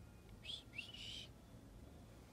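Faint bird calls: two short, high chirps about half a second in, the second rising and then holding its pitch.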